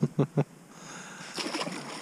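A released smallmouth bass splashing back into the lake water beside the boat, a short burst of splashing in the second half.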